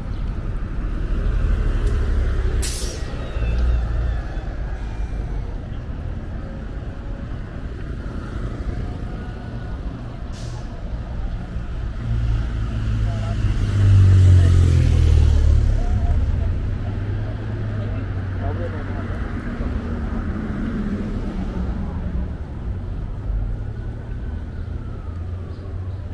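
Downtown street ambience: a steady rumble of road traffic that swells as a vehicle passes about two-thirds of the way through, with a short sharp hiss about three seconds in and another near the middle.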